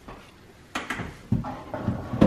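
Lower kitchen cabinet door being opened, with a sharp click a little under a second in and then a low knock.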